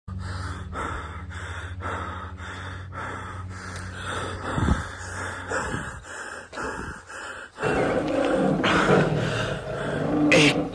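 A person panting heavily in regular breaths while moving quickly through undergrowth, over a low steady hum. Near the end it changes suddenly to a louder, rougher passage of a man's voice.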